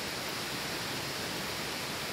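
Steady rush of a river's flowing water, an even hiss with no separate splashes or other events.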